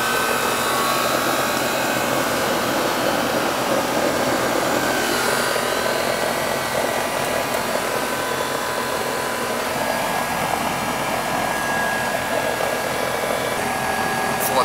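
Outdoor air-conditioning condensing unit running steadily: an even rush of air from the condenser fan with a faint hum. The R-410A system is running low on refrigerant, with suction pressure near 58 psi.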